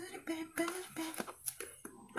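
A woman's low, wordless mumbling, with several light clicks and handling noises from scissors working at the packaging of a phone box.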